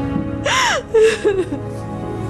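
A woman crying: a gasping wail rises and falls about half a second in, then two short sobs follow, over sustained background music.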